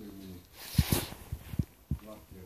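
A person close to the microphone gives a short hum, then blows out a breathy puff of air, with a few soft low thumps.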